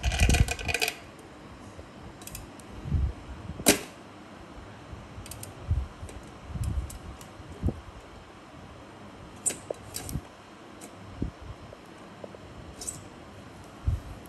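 Quiet room with scattered short sharp clicks and soft low thumps. The loudest is a single sharp click about four seconds in.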